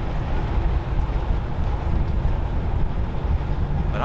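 Wind buffeting the microphone: a steady, loud low rumble that rises and falls slightly.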